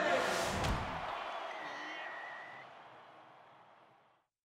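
Animated logo sting: a whoosh that swells and ends in a hit about three-quarters of a second in, then a high ringing tone over a fading tail that dies away.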